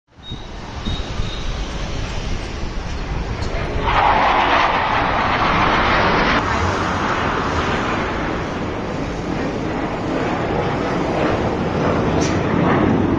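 Jet roar from fighter jets flying overhead. It swells about four seconds in and then fades slowly as they pass.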